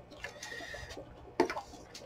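Glue stick rubbing across paper with a faint brief squeak, then a single sharp knock about a second and a half in as the glue stick is set down on the wooden desk.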